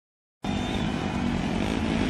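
Silence, then a little under half a second in, the engines of several speedway motorcycles cut in at once and run loud and steady together at the starting gate.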